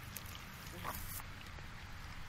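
A pause between spoken phrases: a steady low hum and faint background hiss, with a brief faint sound about a second in.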